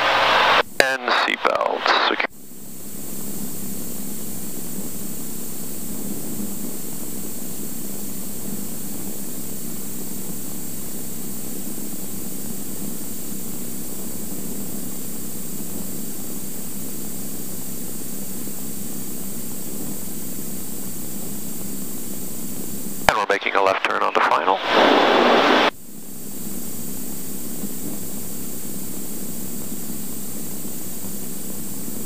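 Steady, even drone of a Cirrus SR22 G3's six-cylinder Continental engine, propeller and airflow heard inside the cockpit in flight. Two brief bursts of voice break in, right at the start and again about 23 seconds in.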